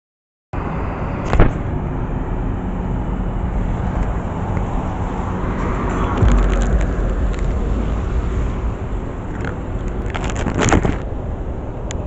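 A small body camera being handled as it starts recording, its microphone picking up rubbing and a sharp knock about a second in and another near the end. Behind this is a steady low street and traffic rumble that swells for a moment in the middle.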